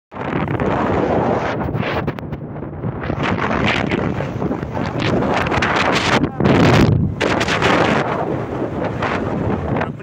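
Heavy wind buffeting on a phone microphone carried on a moving open vehicle, a dense rushing noise that surges strongest about six and a half seconds in.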